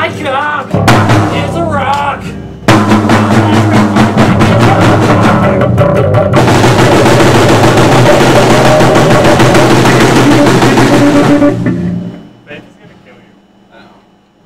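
Rock band demo recording: a voice over drums, then the full band comes in loud with drums at about three seconds, with a bright wash of cymbals from about six seconds. The music stops just before twelve seconds and rings away to quiet.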